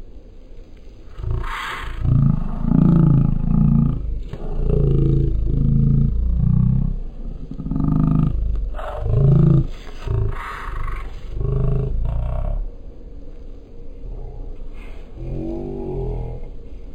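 Deep, drawn-out sounds rising and falling in pitch over a steady low rumble, from about a second in until near the end: sound inside a moving car, slowed several times over and pitched far down along with the slow-motion footage.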